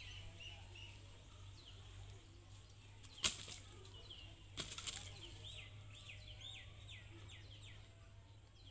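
Dry palm fronds rustling and crackling in two sharp bursts, about three seconds in and again a second and a half later, as they are handled. Birds call throughout in short repeated downward chirps, quickening near the end.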